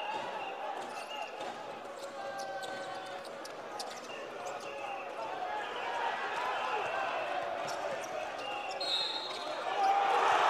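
Live sound of an indoor basketball game: a basketball bouncing on a hardwood court, with crowd voices and shouts echoing through a large hall. The crowd noise swells near the end.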